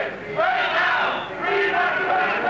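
A crowd of demonstrators chanting a slogan together, many voices shouting at once in rhythmic surges.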